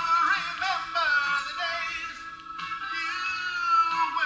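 Live country band playing, with a melodic lead line of bending, sliding notes over sustained chords.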